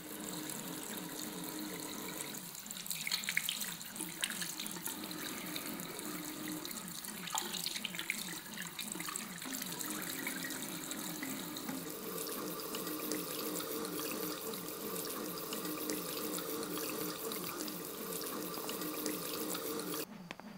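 Water running steadily from a bathroom tap into a sink, with hands being washed under the stream. A low hum sounds underneath, joined by higher steady tones about twelve seconds in.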